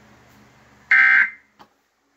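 One short, loud burst of Emergency Alert System end-of-message data tones from a TV, a buzzy digital warble about a second in, after the spoken Child Abduction Emergency alert has ended. It is the first of a series of identical bursts about 1.3 s apart.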